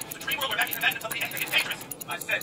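A man's indistinct voice over a fast, even ticking: a Valjoux 7730 chronograph movement running.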